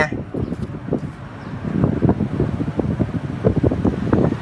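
Wind buffeting the microphone of a vehicle moving along a paved street, with road and engine noise underneath: a low, irregular rumble that eases slightly about a second in.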